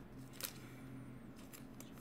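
Faint rustle of a trading card being handled and slid into a clear plastic card sleeve, with one light click about half a second in.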